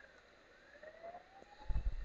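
A faint siren wailing in the distance, its pitch dipping and then slowly rising. From about one and a half seconds in, a low rumble or bump on the microphone is louder than the siren.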